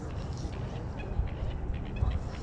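Outdoor ambience: an uneven low rumble, like wind on the microphone, with a few short, faint chirps, typical of birds, about a second in and again near the end.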